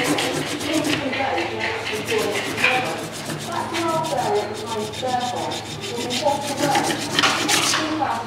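Crayon rubbed rapidly back and forth over paper laid on a raised fossil cast, making a fossil rubbing: a continuous scratchy rasp of many quick short strokes.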